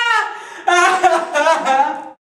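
A young man's voice: a long held note that tails off, then about a second of wavering, sing-song vocalising with no clear words.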